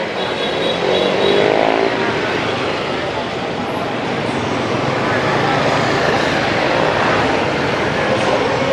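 Steady street-traffic noise of passing engines, with one engine's pitch rising in the first two seconds.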